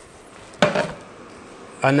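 A single short knock about half a second in, as a plastic blender jar is set down on a wooden chopping board.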